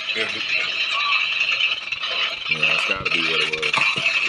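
Police body-worn camera audio: the officer's clothing and gear rattle and rub against the microphone as he walks. A voice speaks briefly and indistinctly after about two and a half seconds.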